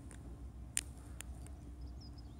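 Faint outdoor background with a steady low rumble and three short sharp clicks, the loudest a little under a second in.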